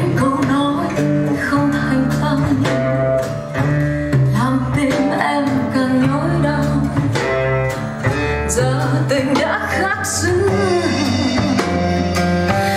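A song with a singer and guitar accompaniment over sustained bass notes, played back over a hi-fi system: a Rogue Audio Cronus Magnum III tube amplifier driving JBL L100 Classic loudspeakers.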